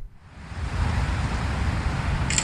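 Wind buffeting the camera microphone outdoors: a steady rushing noise with a fluctuating low rumble, swelling up in the first half second.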